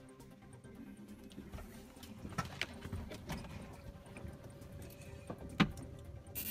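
Scattered light clicks and knocks of handling inside a truck cab with the ignition switched on and the engine off, over a faint steady hum, with one sharp click near the end.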